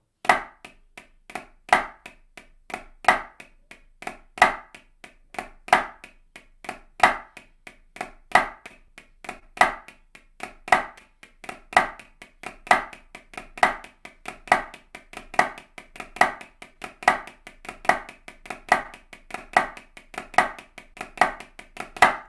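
Wooden drumsticks playing flams on a drum practice pad, several sharp strokes a second in a steady pattern with louder accented strokes recurring about every second and a half.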